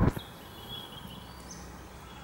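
Quiet outdoor background with a bird's thin high call held for about a second, then a brief higher note.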